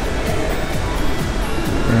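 Background music at a steady level.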